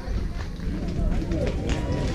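Several voices overlapping and calling out at a distance, players and spectators around a softball field, over a steady low rumble.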